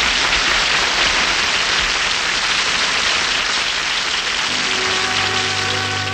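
Studio audience applauding. About four and a half seconds in, an orchestra with brass starts playing the introduction to a song while the applause fades.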